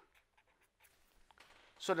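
Faint scratching of a pen writing on paper: a few light, scattered strokes.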